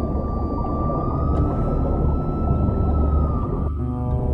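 Underwater ambient sound picked up through a camera housing: a continuous low rumble with a single steady high whine held for nearly four seconds, stopping just before the end.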